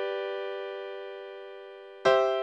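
Piano chords from a C–F–G–C progression played with inverted chords: one chord rings and fades slowly, and the next is struck right at the end.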